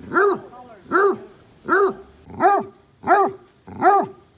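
Basset hound barking repeatedly, six barks about 0.7 s apart, each rising and falling in pitch.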